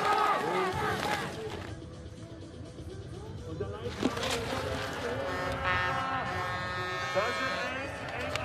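Television sports broadcast audio: a commentator speaking in German over background music, with a held tone for about two seconds in the second half.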